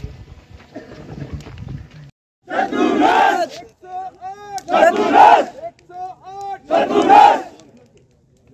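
A crowd shouting a slogan together three times, about a second apart, with one man's voice calling out between the shouts in call-and-response. Before it there is low outdoor crowd murmur, cut off briefly.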